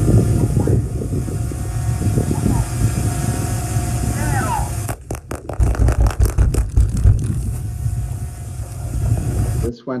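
Field recording of buried explosive charges detonating in soil for a liquefaction blast test: a steady low rumble and hiss, then from about five seconds in a rapid series of muffled thumps over about two seconds as the charges go off in sequence, faster than planned.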